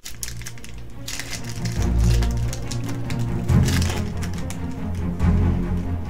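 Dramatic background music with deep bass notes coming in about two seconds in. A foil trading-card booster pack crackles as it is torn open near the start.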